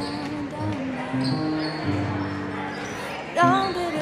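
Pop song playing: held accompaniment notes between sung lines, with the singing coming back in loudly near the end.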